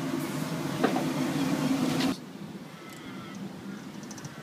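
Steady low hum of ship's machinery with a single knock about a second in. The hum cuts off abruptly about halfway through, leaving a much quieter background.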